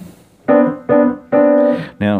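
Yamaha piano: three single notes played one after another, about half a second apart, the three notes around middle C (B, C, D) that sit between the bass and treble staves.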